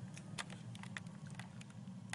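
Quick, irregular light clicks, about a dozen in two seconds, typical of typing and tapping on a smartphone, over a steady low room hum.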